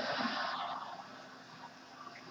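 Studio audience laughing through a TV speaker, a dense wash of crowd laughter that fades away over about a second.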